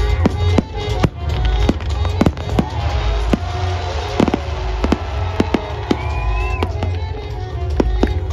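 Aerial fireworks going off in quick succession: a string of sharp bangs and crackles, roughly two a second at uneven spacing, over loud music.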